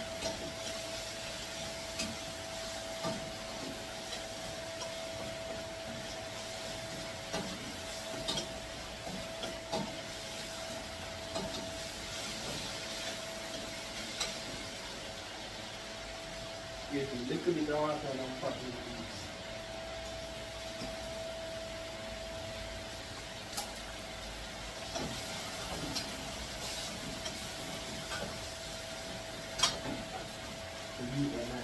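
Cooking on a gas stove: a steady hiss with scattered light clinks of a utensil against a pot, over a steady faint tone. A short burst of a man's voice comes a little past halfway.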